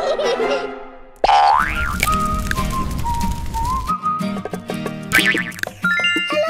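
Background music with cartoon sound effects. About a second in, a sudden sound glides quickly upward in pitch; a high tone then wavers up and down over the next few seconds.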